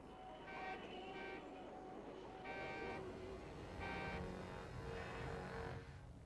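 Faint city traffic, a low steady rumble with car horns sounding several times.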